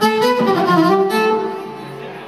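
A short, loud melodic flourish in a violin tone from the party band, starting suddenly and fading about a second and a half in.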